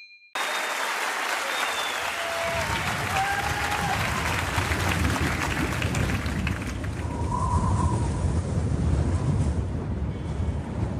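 Audience applauding, with a deep rumble building underneath from about two seconds in.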